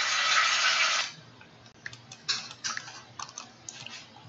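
A loud steady hiss that cuts off suddenly about a second in, followed by scattered light clicks of a computer keyboard and mouse, several a second and irregular.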